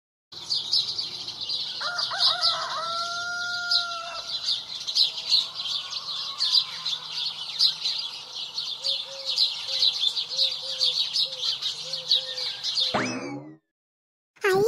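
Morning farmyard sound effect: birds chirping continuously, with a rooster crowing about two seconds in and a run of short hen clucks later on. Near the end, a quick falling whistle-like glide, then the sound cuts off.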